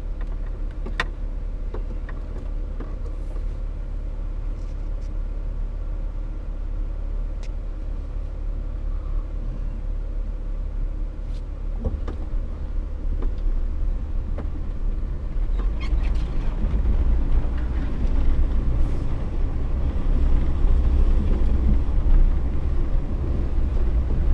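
Off-road vehicle engine and drivetrain running low and steady while crawling along a snowy trail, with a few light clicks early on. The rumble grows louder from about sixteen seconds in as the vehicle moves forward.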